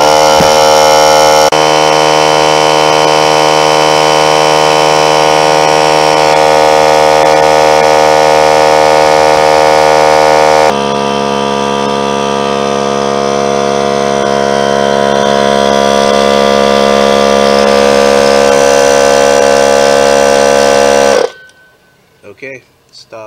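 Central Pneumatic 3-gallon oilless hot dog air compressor running its break-in with the regulator open, so the pump blows air through freely. A loud, steady motor-and-pump drone with many tones, slightly quieter from about halfway, stops abruptly near the end.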